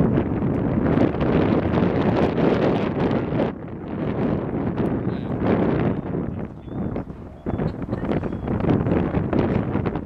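Wind buffeting the microphone in loud, uneven gusts, with brief lulls about a third and two thirds of the way through.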